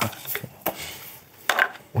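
A few short taps and clicks of stiff answer cards being handled and set down at the podiums, with light handling rustle in between.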